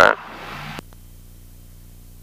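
The tail of a spoken "uh" is followed by a softer sound that stops a little under a second in. After that there is only a faint, steady low drone from the light aircraft's engine, held at approach power.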